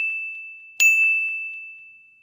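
Notification-bell chime sound effect: a ding already ringing out, then a second ding about a second in. Each is a single high, clear tone that starts sharply and fades away slowly.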